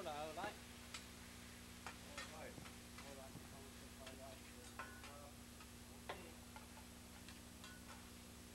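Metal spatula tapping and scraping on a steel teppanyaki griddle while fried rice is worked. The sound is faint, irregular clicks roughly a second apart.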